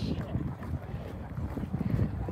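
Wind buffeting the camera microphone in an uneven low rumble, with some talking in the background.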